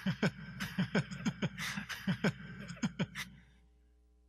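Recorded sound poem made with the mouth alone: a quick run of tongue clicks and clucks against the roof of the mouth, about three a second, each dropping in pitch, with breathy hissing in the middle. The clicking stops about three and a half seconds in.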